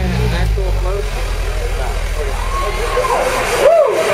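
Dance music over a club sound system in a breakdown: a held deep bass note under wavering, gliding vocal-like lines. The bass cuts out suddenly near the end, with a swooping rise and fall in pitch.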